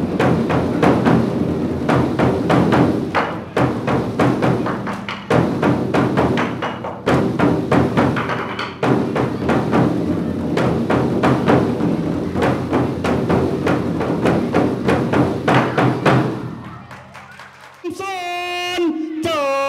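Thai barrel drums (klong) beaten rapidly with sticks, dense volleys of strokes in phrases of about two seconds over a low ringing drone. The drumming fades out near the end.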